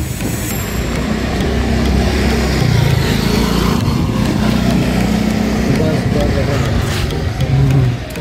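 Wind rush and low rumble on the microphone while riding a motor scooter, with the scooter's engine running steadily underneath.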